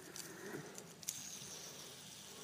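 Faint handheld fidget spinner: a few light clicks as fingers handle it, then from about a second in a quiet, steady high whirr as it spins.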